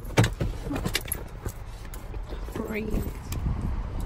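A sharp knock about a quarter of a second in, then light clinks and jingling like keys or a dog's harness tags as someone moves around a car, with a short voice sound near the end.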